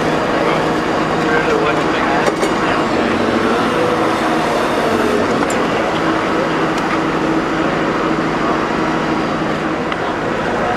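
Diesel engine of a Hydrema MX14 mobile excavator running steadily, with people talking around it.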